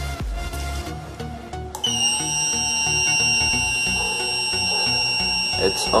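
Small AAA-battery stirring motor in the base of a self-stirring mug, just switched on: a steady high-pitched whine that starts abruptly about two seconds in with a slight rise as it spins up. Background music plays throughout.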